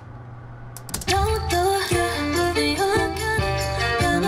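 Playback of a multitracked female vocal arrangement starting about a second in: several stacked harmony parts moving together in steps over a low bass line, the layered bridge vocals heard back all together.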